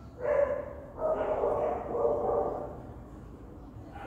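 A dog barking: one short bark, then a longer run of barks from about a second in.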